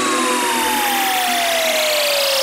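Electronic dance music breakdown with the kick drum and bass dropped out. A synth tone glides steadily down in pitch over a swelling wash of noise.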